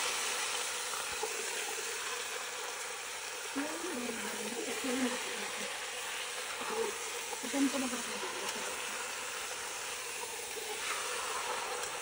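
Chicken pieces sizzling steadily in a pressure-cooker pot on the stove while being turned with a spoon.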